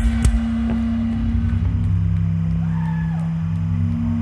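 Electric guitar and bass chord held and ringing out through the amplifiers after a last few drum hits at the very start, sustaining at a steady level. A faint rising-and-falling tone sounds briefly about three quarters of the way through.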